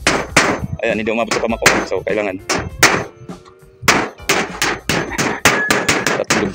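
A hammer driving nails through corrugated iron roofing sheets into wooden rafters: a loud run of sharp metallic strikes, several a second, in irregular quick clusters.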